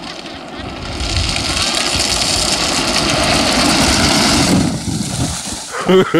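Plastic wheels of a child's ride-on toy car rolling fast down a concrete ramp, a rough steady rumble that grows louder as it approaches. It eases off shortly before the end as the car runs into the water with a splash, and laughter starts right at the close.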